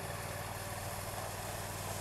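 Stiga Park Pro 540 IX ride-on mower's engine running steadily as the machine drives slowly over gravel, dragging a towed rake through the stones.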